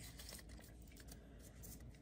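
Near silence, with faint rustling of Pokémon trading cards being handled and slid apart.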